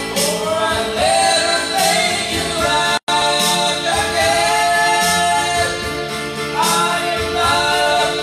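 A man singing into a karaoke microphone over a music backing track, his voice amplified. The sound cuts out completely for an instant about three seconds in.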